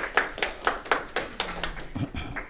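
Hands clapping in applause, with distinct, evenly spaced claps about four a second.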